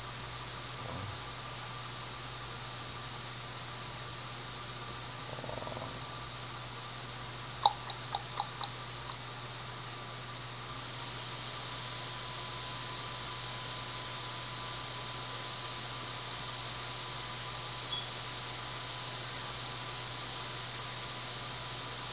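Steady low hum and fan noise with a faint high steady whine, the room tone of a running computer. About seven and a half seconds in comes a sharp click, followed by a few quicker ticks.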